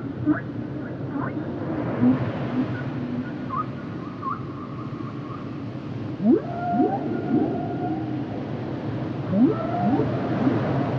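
Humpback whale song: long held moans, then about six seconds in a couple of quick rising whoops, repeated near the end, over a steady background hiss.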